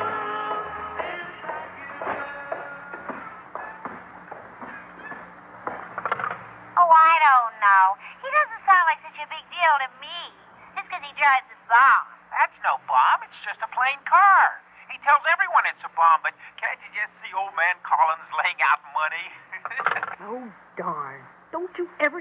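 A short musical bridge fades out over the first six seconds. About seven seconds in, animated, sing-song voices start chattering and keep going without a break.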